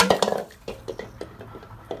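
Water sloshing out of a tipped-over plastic bucket and splashing onto concrete, with a sharp hit at the start and scattered knocks and clatter after. A brief vocal sound comes right after the first hit.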